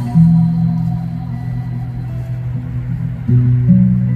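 Live acoustic performance: a man sings long, low held notes into a microphone while strumming a steel-string acoustic guitar; the pitch steps to a new note a little after three seconds in.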